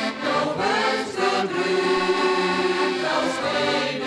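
Folk choir of women's and men's voices singing, accompanied by two accordions holding steady chords underneath.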